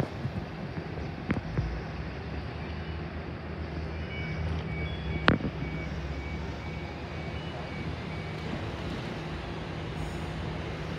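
Sydney Trains OSCAR (H set) electric train standing at the platform with a steady low hum, and from about four seconds in a run of short high beeps, two to three a second for about four seconds, the train's door-closing warning. A sharp knock about five seconds in.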